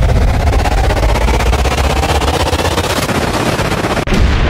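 Loud, continuous rapid-fire rattle of sharp cracks, a machine-gun style sound effect, that cuts off abruptly at the end.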